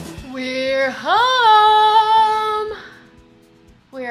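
A woman's voice singing out a long, high note in a sing-song call, sliding up about a second in and held for nearly two seconds before it fades.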